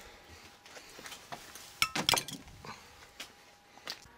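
A few short metallic clinks and knocks, the loudest pair about two seconds in, from handling a just-removed microwave oven transformer.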